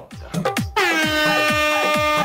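An air-horn sound effect starts about a second in and holds steady for about a second and a half, over background music with a beat of low thumps about three a second.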